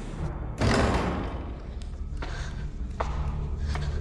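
A sudden loud thud about half a second in that rings out over about a second, over a low, steady dramatic music drone, with a few lighter knocks after it.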